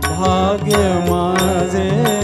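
Male Hindustani devotional singer drawing out an ornamented vowel between words over sustained organ accompaniment.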